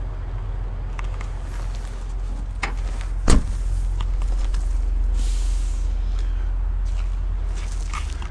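The trunk lid of a 2001 Ford Taurus being shut: a single sharp slam about three seconds in, over a steady low rumble.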